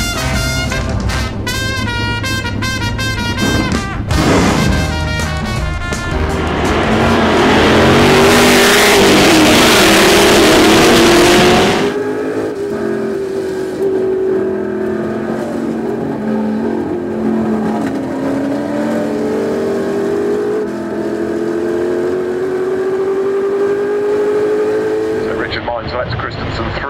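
Swing music with brass at first, then racing car engines, loudest for about five seconds from roughly a quarter of the way in. After a sudden cut comes the onboard sound of a Ford GT40's V8 engine heard inside the cabin, its note climbing steadily as the car accelerates.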